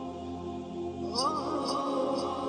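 Devotional Arabic chanting of salawat, with sustained held notes. About a second in, a new vocal phrase rises in and the sound grows slightly louder.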